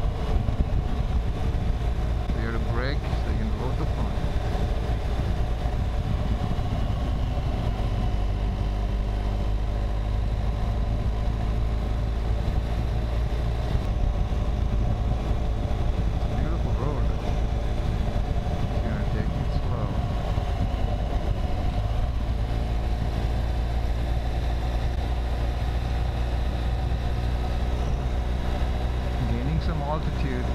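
BMW R1200 GS Adventure's boxer-twin engine running at a steady cruising speed, its pitch holding level throughout.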